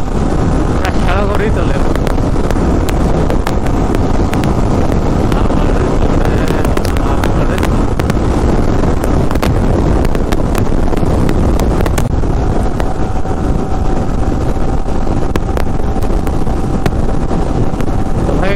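Wind buffeting the microphone of a Yamaha sport motorcycle ridden at around 100 km/h on a highway, a steady loud rush with the bike's engine running underneath.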